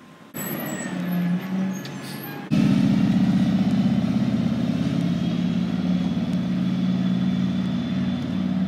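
A motor vehicle engine running steadily, much louder from about two and a half seconds in.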